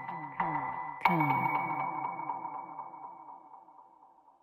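Live electronic music: a struck, ringing electronic tone comes in twice, about half a second and a second in, over a pulsing pattern of short falling blips about four a second, and fades away toward the end.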